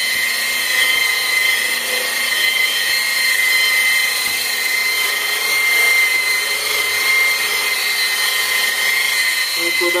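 Handheld electric variable-speed polisher running steadily at about 1500 RPM, a high-pitched whine, its foam pad buffing the black stovetop under light pressure.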